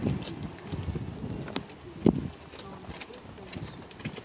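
Wind buffeting the phone's microphone in uneven gusts, with a few short knocks from the phone being handled as it pans.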